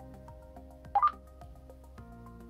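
Motorola T100 Talkabout walkie-talkie giving a short two-note beep, a lower note stepping up to a higher one, about a second in as it is switched on, powered at 3.4 volts from a bench power supply. Background music plays underneath.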